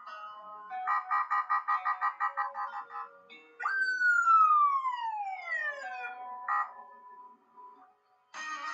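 Electronic sound effects: a run of rapid beeps, about five a second, for two seconds, then a loud whistle gliding steadily down in pitch for about two and a half seconds, and a short blip after it.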